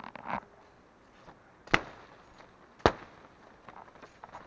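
Brief rustling of undergrowth, then two sharp, loud cracks about a second apart.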